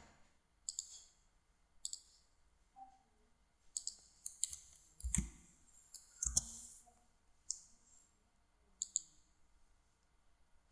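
Computer mouse buttons clicking, each press and release heard as a quick pair of ticks, about eight times spread through. Two heavier clicks with a low knock come about five and six seconds in.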